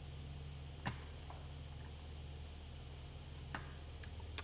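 Two faint, short clicks about three seconds apart over a steady low hum of room tone.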